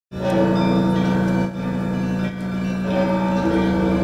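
Orthodox church music: held chords over a steady low drone, changing every second or so.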